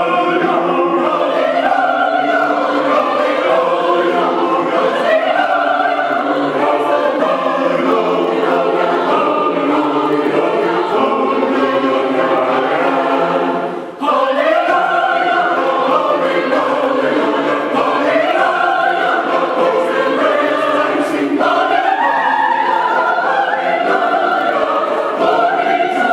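Mixed church choir singing a hymn in parts, with sustained notes in long phrases. The singing breaks off briefly about 14 seconds in, then a new phrase begins.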